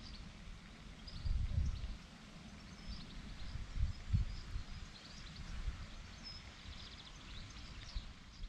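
Outdoor ambience: faint, scattered bird chirps over an uneven low rumble that swells about a second in and again about four seconds in.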